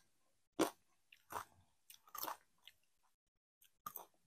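Doritos tortilla chips being bitten and chewed: a few short, separate crunches about a second apart, the first the loudest, with quiet gaps between.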